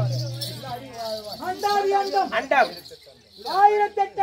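A man's voice in sung, drawn-out lines from a Tamil therukoothu street-theatre performance, with two long held notes that fall away at their ends, over a faint high jingling shimmer. A low steady hum fades out about a second in.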